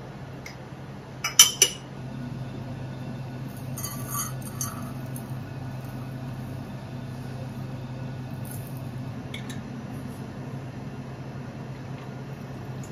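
Tea ware clinking: three sharp clinks close together about a second and a half in as cups and glassware are handled, then a brief soft pour of tea, over a steady low hum.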